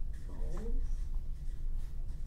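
Marker writing in short strokes on flip-chart paper, with a faint squeak to each stroke, over a steady low room hum. A voice speaks briefly about half a second in.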